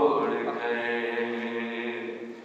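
A man's unaccompanied devotional chant: one long held note that slowly fades away at the end of a recited line.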